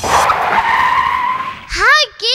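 Cartoon car sound effect: a loud tyre screech as the car skids to a stop. Near the end comes a rising voice-like call.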